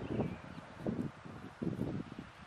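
Light wind buffeting the microphone in uneven low puffs, with faint leaf rustle.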